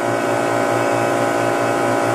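A running refrigeration compressor unit giving a steady, even hum, a low drone with a stack of higher tones above it.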